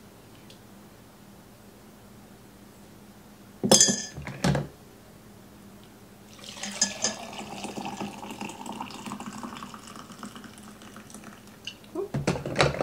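Coffee poured from a coffee-maker carafe into a ceramic mug for about five seconds, the pitch of the pour rising as the mug fills. A brief clatter comes about four seconds in, before the pour.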